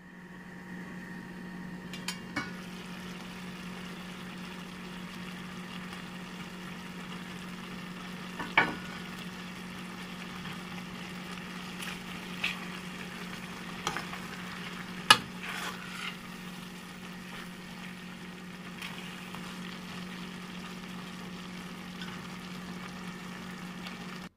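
Chicken spaghetti in broth sizzling steadily in a pot over a low hum, while a utensil stirs it. The utensil knocks sharply against the pot several times, loudest about fifteen seconds in.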